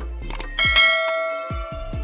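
A quick click sound effect, then a bright bell ding, the notification-bell cue of a subscribe-button animation, ringing out and fading over about a second. Background music with a steady kick-drum beat plays under it.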